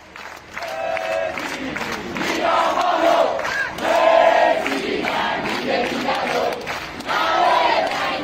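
A crowd of Burmese protesters singing a protest song together, with long held notes over crowd noise. It starts about half a second in.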